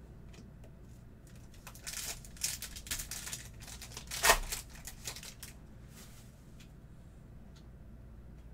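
Foil trading-card pack crinkling as it is handled, then ripped open with one sharp tear about four seconds in. A few faint clicks of the cards being handled follow.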